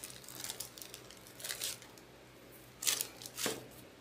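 Small plastic zip-top bag crinkling as it is handled and opened, in a few short rustles, the loudest about three seconds in.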